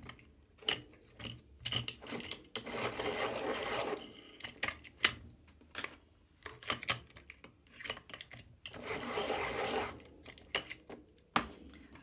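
Coloured pencils being sharpened: two spells of grinding, each about a second and a half long, about two and a half and eight and a half seconds in. Between them come small clicks and taps of pencils being handled and set down.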